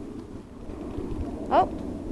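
Low, ragged rumbling background noise, with a short rising vocal sound about a second and a half in.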